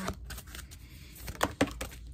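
Tarot card being handled and laid down on a table: light rustling, with two sharp card clicks close together about one and a half seconds in.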